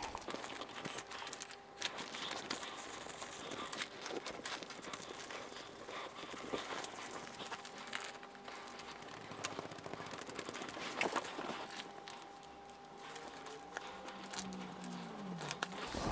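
Faint rustling and scratchy rubbing of thin paper as it is lifted at a corner and then smoothed down by hand over a gel printing plate to take up the paint.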